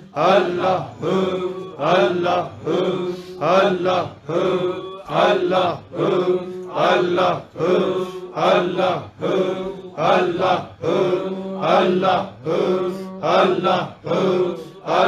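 A group of men chanting "Allah" aloud together in Sufi zikr (dhikr). The same short call repeats in a steady rhythm, a little faster than once a second, to the same tune each time.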